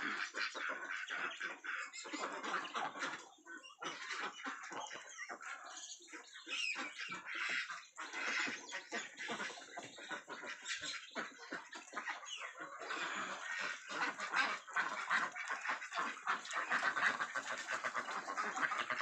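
A large flock of white domestic ducks quacking, many birds calling over one another in a dense, continuous chatter that grows louder over the last few seconds.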